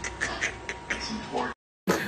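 A run of short scrapes and clicks from a spatula working a thick creamy sauce in a frying pan, with a brief voice near the end before the sound cuts off suddenly.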